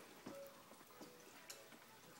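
Near silence with a few faint soft taps, about three in two seconds: footsteps climbing carpeted stairs.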